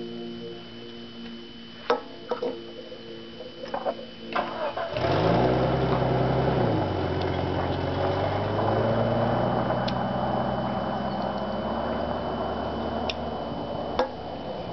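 A few light clicks, then an engine starts about five seconds in, runs faster for a couple of seconds, drops to a lower steady pitch and keeps running.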